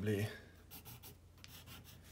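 Pencil writing on paper: a few faint, short scratching strokes as a number is written.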